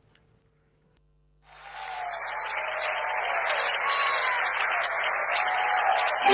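About a second and a half of near silence, then audience applause fading in and holding steady at the opening of a recorded choir track.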